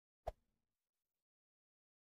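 A single short click of a button-tap sound effect about a quarter of a second in, as the like button is pressed in the animation.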